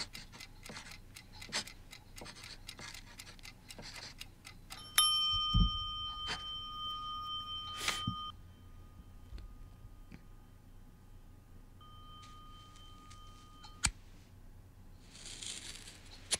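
Pencil scratching quickly on newspaper as a crossword is filled in, then a steady bell-like ringing tone starts suddenly about five seconds in. The ringing lasts about three seconds, comes back fainter later and cuts off with a click near the end.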